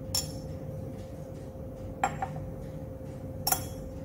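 Glass laboratory beaker clinking as it is handled and set down on the bench: four short sharp clinks, two of them close together about two seconds in, over a steady low hum.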